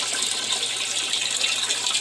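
Water pouring steadily from a PVC pipe onto a mesh filter sieve in a plastic barrel, a continuous splashing rush. This is the aquaponic system's flow running through the sieve, which holds back the solid waste and lets only filtered water pass.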